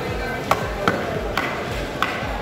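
A heavy knife chopping through tuna into a wooden stump chopping block: three sharp strikes about half a second apart, with a fourth at the very end. Background music plays underneath.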